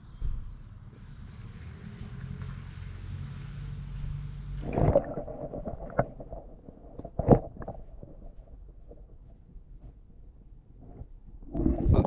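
Low rumbling, then about five seconds in a loud splash as the microphone goes under the water. After that everything turns muffled: dull knocks and gurgling heard underwater around a fish being released from a landing net.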